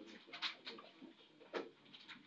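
Faint classroom background picked up by the teacher's microphone: scattered clicks and rustles, with two louder knocks about half a second and a second and a half in.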